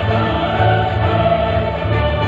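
Orchestral music with a choir singing, sustained chords over a steady bass line, played back from a video.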